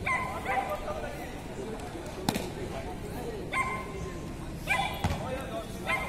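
Volleyball match play: one sharp slap of the ball being struck about two seconds in, and a duller knock near the end, amid short shouts from players and spectators.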